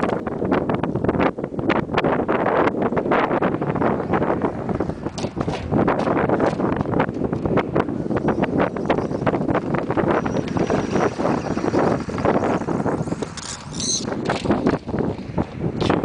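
Wind buffeting the microphone, a steady rough rumble. Near the end a brief high whine wavers up and down for about a second.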